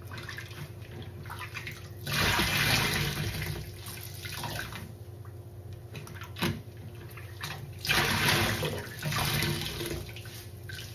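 A soaked sponge pressed and squeezed by hand in a sink of sudsy rinse water, water and suds gushing out of it. There are two loud squeezes about six seconds apart, a short sharp squish between them, and quieter squishing and dripping in between.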